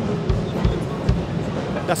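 Deep drum hits, about four, on the low drums of a Pearl Reference Pure kit with thin shells, over the first second or so.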